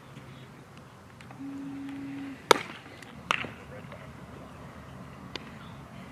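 Bat cracking off a baseball hit on the ground about two and a half seconds in, the loudest sound, followed under a second later by a sharper knock of the ball into a leather glove and a fainter pop a couple of seconds after. A short steady low hum comes just before the crack.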